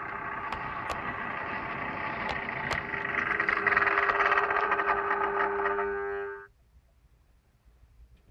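OO gauge model train running into the station: a steady motor hum and wheel rumble on the track with a few sharp clicks, growing louder as it comes close, then cutting off suddenly about six and a half seconds in as the train stops.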